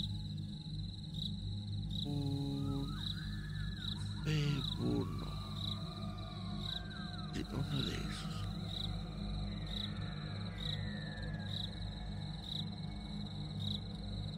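Eerie night-ambience sound bed: a steady high cricket trill pulsing about once a second over a low drone, with slow wavering, gliding calls and a brief sustained chord near the start.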